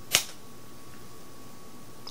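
A single sharp knock or click as the avocado pit is worked out of the halved fruit, about a tenth of a second in, followed by faint room tone with a thin steady hum.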